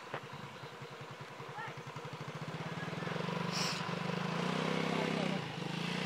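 A motorcycle engine running, its low, even pulsing growing louder over the first three seconds and then holding steady.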